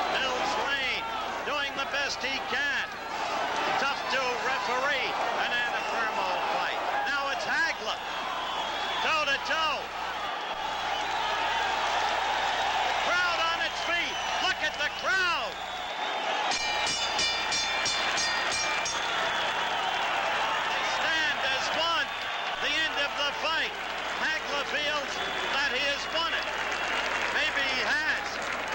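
Boxing arena crowd shouting and cheering. About sixteen seconds in, the ring bell clangs rapidly over and over for about two and a half seconds, marking the end of the fight's final round.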